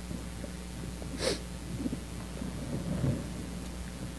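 Soft handling sounds and a brief hiss about a second in, over a steady low hum, as the priest handles the items on the side table.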